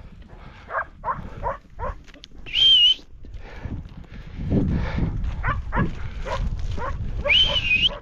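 A person whistles two sharp, high whistles, about two and a half seconds in and again near the end, calling the dogs back. In between, a dog gives several short barks.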